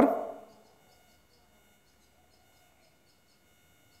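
Near silence: faint room tone with a few thin steady tones and faint, evenly spaced ticking.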